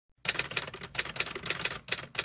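Typing sound effect: a rapid run of sharp key clicks, several a second, with brief pauses between bursts.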